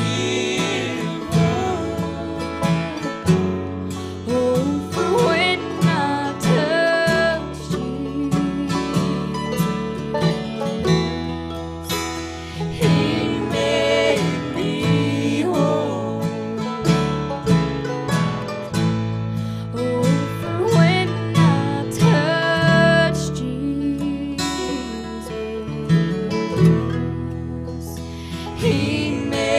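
Acoustic bluegrass band playing: a woman sings the lead over strummed acoustic guitar and mandolin.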